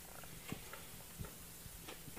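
Quiet room tone: a faint steady low hum with a few soft clicks.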